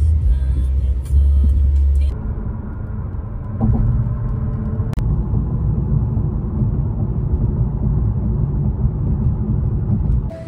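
A couple of seconds of music with a heavy bass beat, then a steady low road and tyre rumble heard from inside a moving car's cabin, with one sharp click about halfway through.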